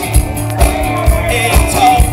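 A live rock band playing: electric guitars over a steady beat of about two and a half pulses a second, with a man singing into the microphone in the second half.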